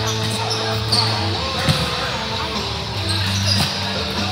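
Volleyball being hit and bouncing on a hardwood-style gym floor: two sharp smacks, about one second in and just before two seconds in, over rock guitar music and voices.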